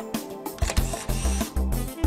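Background music with a drum beat, with a camera shutter-style click and whir sound effect in the middle, about half a second to a second and a half in.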